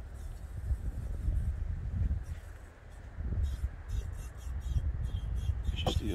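Wind rumbling on the microphone over a faint, steady hiss of propane flowing from a 20 lb tank through a refill adapter hose into a 1 lb bottle, which is still filling. From about halfway through come several small clicks and scratches of the brass adapter and bottle being handled, the sharpest one near the end.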